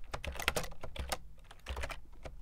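Computer keyboard typing: a run of quick, uneven keystrokes, several clicks a second.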